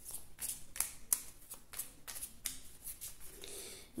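A Lenormand card deck being shuffled in the hands: an irregular run of quick, light card clicks and slaps.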